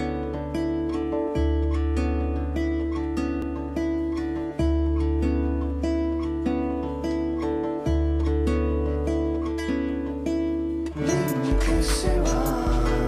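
Recorded song with a guitar picking a steady pattern of plucked notes over held bass notes that change every few seconds. Near the end, drums come in, played on an electronic drum kit.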